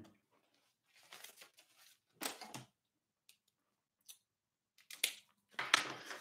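Faint, scattered rustling and handling noises of a paper notepad being moved and set down: a few short scuffs with near silence between them.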